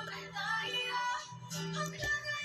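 A woman singing over a recorded instrumental backing track, with long held bass notes beneath the melody.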